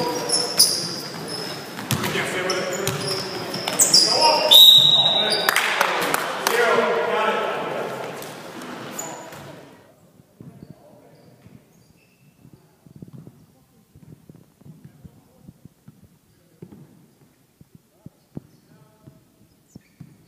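Basketball game on a gym court: a bouncing ball, short high sneaker squeaks and players' shouts ringing in a large hall. About halfway through the sound drops suddenly to faint scattered taps.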